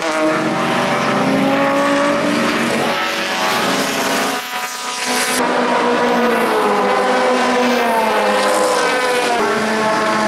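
Race car engines running hard as the cars pass on the track, their notes sliding up and down in pitch. The sound dips briefly about four and a half seconds in and changes abruptly about a second later.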